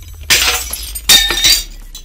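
Intro sound effect of glass shattering twice, just after the start and again about a second in, with high tinkling rings after the crashes over a low steady drone.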